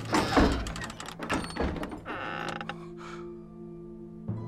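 A run of creaking, scraping and knocking lasting about three seconds, loudest in the first second, over held notes of orchestral background music.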